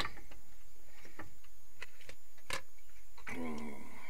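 A few light clicks and taps of small items being handled, about four in the first two and a half seconds, the last one the sharpest. A man's voice starts near the end.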